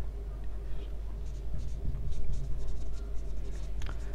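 Marker pen writing on a whiteboard: a run of short, faint scratchy strokes as words are written, over a steady low hum.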